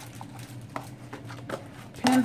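Faint clicks and light taps of stiff plastic snap-button pencil pouches being handled and moved about, a few scattered ticks over a low steady hum.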